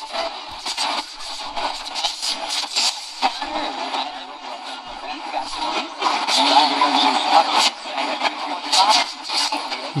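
Horologe HXT-201 pocket radio's small speaker on the AM band near the top of the dial, around 1590 kHz: a weak, distant station's voice coming through steady static and hiss, a little louder in the second half.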